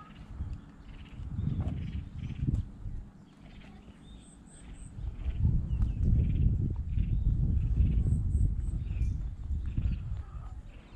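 Wind buffeting the action camera's microphone in gusts, strongest in the second half, over steady walking footsteps on a concrete path.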